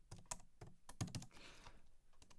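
Faint computer keyboard typing: a handful of separate key clicks spread across the two seconds.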